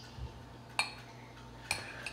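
A metal fork clinking against a glass pickle jar: two sharp clinks, one just under a second in and one near the end, after a soft thump about a quarter second in.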